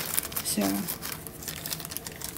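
Light plastic crinkling with scattered small clicks, from beads and metal findings being handled on a plastic-covered work table.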